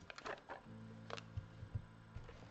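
Hands opening a small cardboard card box and sliding the deck of cards out: a few soft scrapes and taps in the first half-second and another about a second in, over faint, steady background music.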